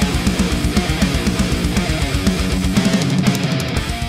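Distorted electric guitar through an amp, an Epiphone Les Paul-style, playing a fast, tightly picked heavy-metal rhythm riff with many even note attacks a second.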